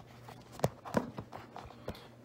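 Handling noise from a hand touching the phone doing the recording: three short knocks and taps, about two-thirds of a second in, at one second and near the end.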